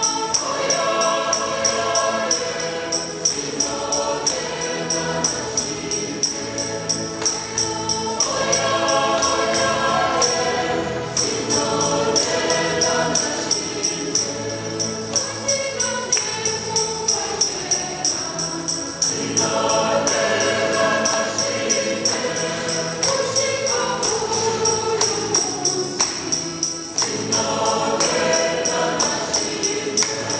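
A choir singing gospel music over a steady pulsing beat, with a constant high percussive shimmer running through it.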